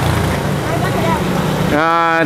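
Steady roadside street din, a noisy rush over a low hum, with a voice starting near the end.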